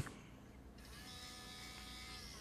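Small DC gearmotor of a Robot Arm Edge starting up about three-quarters of a second in and running with a faint, steady whine. It is driven at 3 V through an L293D H-bridge with input 1 pulled high, turning in one direction.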